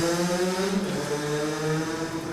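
A man's long drawn-out hesitation sound, a held "euh", at one steady pitch that drops slightly about halfway through.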